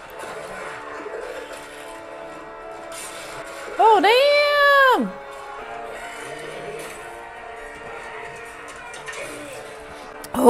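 Battle-scene soundtrack of a TV drama played back: a steady orchestral score under the action. About four seconds in, a loud drawn-out cry lasting about a second rises and then falls in pitch.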